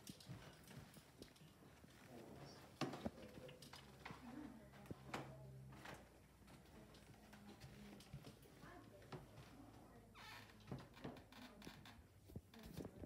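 Quiet footsteps: irregular light steps and small knocks from someone walking, over a near-silent room.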